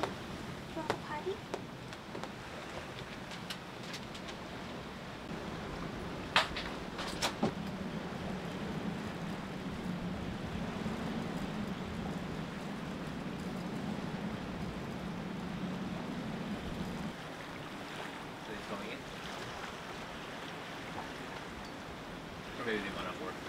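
Storm wind and choppy water heard from a sailboat at anchor. A steady low hum runs through the middle. Two sharp knocks come about six and seven seconds in.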